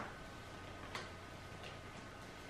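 Tarot cards being handled and laid down on the table: three faint, sharp card clicks at uneven intervals, the first the loudest.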